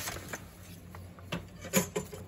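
Light handling noise on a craft table: a metal ruler slid across the table and paper rubbing, with a few small knocks, the loudest near the end.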